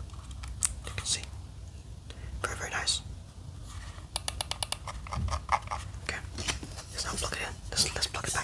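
Fingertips and nails tapping and clicking on a hard plastic device casing close to the microphone, in irregular taps with a quick run of clicks about halfway through.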